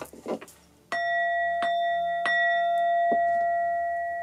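A bell-like tone struck about a second in, ringing on steadily with several clear overtones, with a few light taps over it. It follows a few short rustles.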